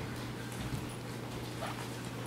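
Quiet room tone with a steady low electrical hum, and a couple of faint, brief sounds about a second apart.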